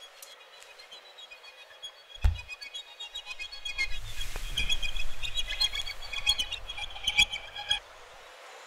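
Film sound-design cue: several high, chirping tones at steady pitches swell from faint to loud over a low rumble, with a deep thump about two seconds in. It all cuts off just before the end.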